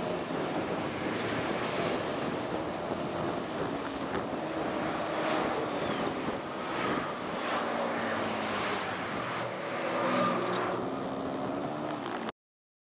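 Wind rushing over the microphone of a camera mounted on a moving rider, with the hum of vehicle engines in surrounding road traffic and a few gusty swells.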